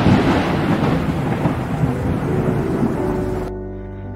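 A thunder rumble with a rain-like hiss over steady music chords. It fades slowly, then cuts off abruptly about three and a half seconds in, leaving only the music.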